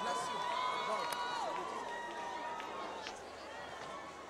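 Faint crowd of many voices talking and calling at once in a large hall, with a faint steady tone beneath.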